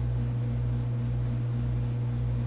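Steady low electrical hum with faint hiss on a phone-call recording while the line carries no speech.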